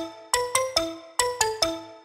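Electronic music: a melody of short, bell-like notes, each struck sharply and left to ring and fade, played without bass or drums.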